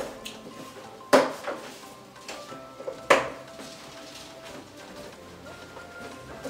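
Latex balloons being pushed into the holes of a plastic balloon garland strip: two sharp snaps about two seconds apart, with faint rubbing of latex between them.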